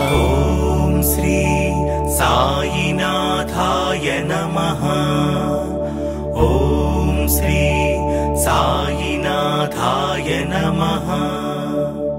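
Devotional song outro: a steady drone with a low bass tone under recurring melodic phrases, beginning to fade out near the end.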